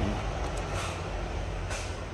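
A steady low machine hum with a light hiss over it.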